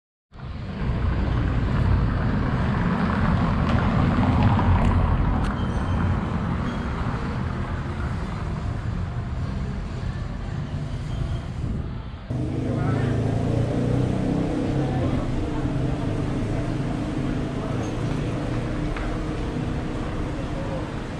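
City street ambience: traffic noise from passing cars. About twelve seconds in it changes abruptly to a busier scene where the murmur of people's voices mixes with the traffic.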